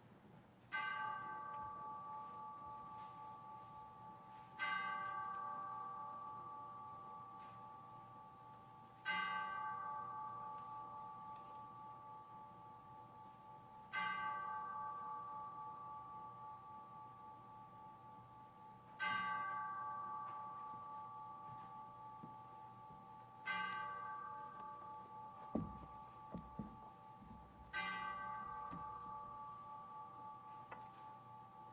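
A single bell struck seven times, a stroke about every four to five seconds, each at the same pitch and ringing on until the next: the chiming of the hour.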